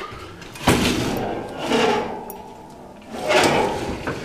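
The lower metal door or drawer of an old General Electric range is pulled open by hand. A clunk about a second in is followed by a few seconds of metal scraping and rattling.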